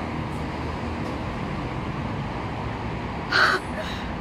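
Steady street ambience with a low traffic hum. About three seconds in, a single loud, harsh call cuts through, followed by a fainter short one.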